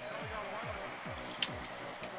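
Faint arena background music with a steady bass beat of about four beats a second, under a low murmur of crowd noise; a short click about one and a half seconds in.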